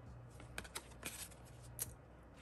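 Glossy photocards being flipped through by hand: faint slides and light clicks of card against card, a few times, the loudest near the end.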